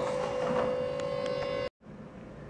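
A single steady pitched tone, like a held sound-effect note, sustained for under two seconds and then cut off abruptly.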